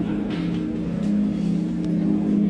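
KTM parallel-twin motorcycle engines running at a steady speed, their low note swelling in loudness a couple of times without rising in pitch.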